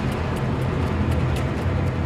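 War-film soundtrack: a steady low rumble with light clicks and rattles over it.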